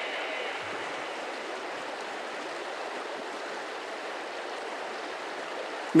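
Steady rushing of running water from a flowing stream or river.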